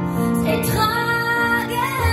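A woman singing live into a microphone with piano accompaniment, holding long notes.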